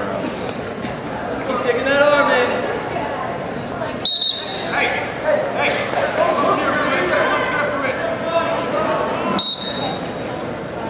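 Gym crowd and coaches shouting during a wrestling bout, broken by two short, high referee's whistle blasts, about four seconds in and near the end: stopping the action and restarting it from the center.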